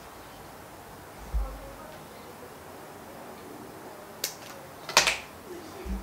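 Two sharp snips, less than a second apart near the end, as the tag end of a heavy monofilament leader is trimmed off a finished knot; a soft low bump against the table comes earlier.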